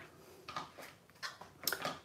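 Faint handling noises on a craft desk: a few light taps and rustles of cardstock pieces being picked up and set down, with a small cluster of clicks near the end.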